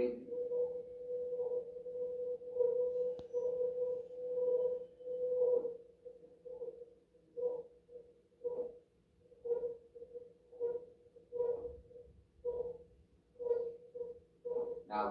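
A steady mid-pitched meditation tone from a background recording played through a speaker, swelling about once a second and breaking into separate pulses about halfway through.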